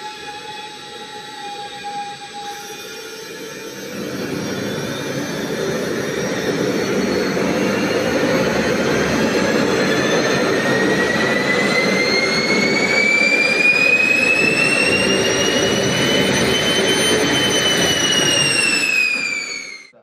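Kolibri micro gas turbine engine for jet drones starting up on a test bench. A steady whine for the first couple of seconds gives way, about four seconds in, to the loud noise of the engine running, and the turbine whine climbs steadily in pitch, levelling off and dipping slightly near the end as the engine spools up to idle.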